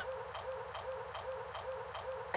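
Cartoon bomb timer ticking evenly, about four times a second, over a steady high whine: the neutrino bomb counting down once armed.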